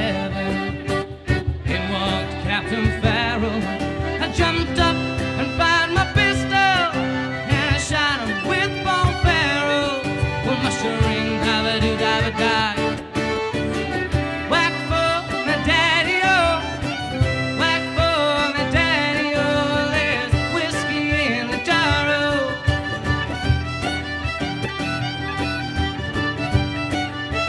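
Instrumental break of an Irish folk song: fiddle carrying an ornamented melody over strummed acoustic guitar, button accordion and a steady cajón beat.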